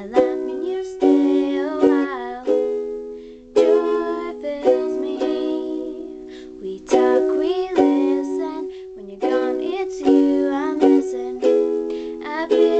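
A ukulele strummed in chords, with a girl singing along to it.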